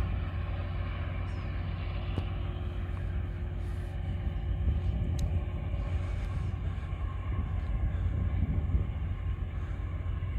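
Steady low rumble with a faint constant hum underneath, no distinct events.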